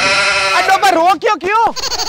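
A man's loud shouted yells on a high pitch that wavers, rising and falling several times in quick succession without clear words.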